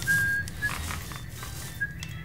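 A person whistling a few short notes, the first held about half a second, over a low steady background hum.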